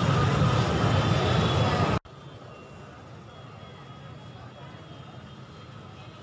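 Busy street crowd and motorcycle traffic: idling and moving motorbike engines mixed with many voices. It is loud for about two seconds, cuts off suddenly, and then continues much fainter.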